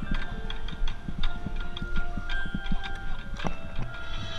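Marching band in a quiet passage: percussion clicks and hits in an uneven, syncopated rhythm over a few faint held notes, with the trumpets resting.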